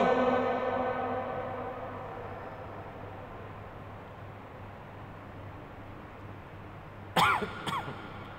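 A man's chanting voice holding the last syllable of an Arabic phrase on one steady pitch, fading out over the first two to three seconds. After that only a low steady hum and room noise, broken by a short vocal sound about seven seconds in.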